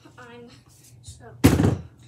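A single loud thud about one and a half seconds in, with a short ring-out: a dumbbell set down hard on a laminate floor.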